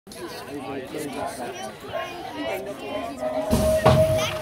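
Spectators chattering beside a BMX track, then the start gate's electronic tone sounding as one steady note about three seconds in, with a short loud burst of noise just after it as the race gets under way.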